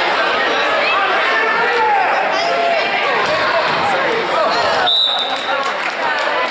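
Spectators' voices shouting and chattering in a gymnasium, with a referee's whistle blown once, a short, steady, high blast about five seconds in.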